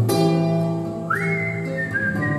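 A strummed chord on a nylon-string classical guitar rings on, and about a second in a whistled melody comes in over it, sliding up to a high held note and then stepping between notes.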